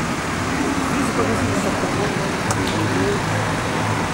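Street traffic noise with a vehicle engine running steadily, and indistinct voices of people talking in the background.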